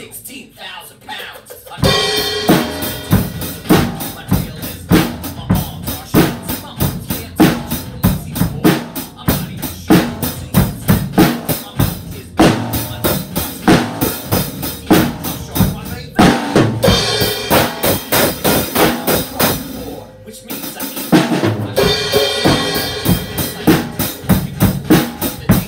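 Acoustic drum kit played in a fast, steady beat (bass drum, snare and cymbals) along with a song. The drumming is sparse for the first two seconds and drops away again briefly about 20 seconds in.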